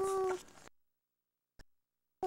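A toddler's drawn-out vocal sound, one held note falling slightly, ending about half a second in. Then the sound cuts out to dead silence, broken once by a brief click.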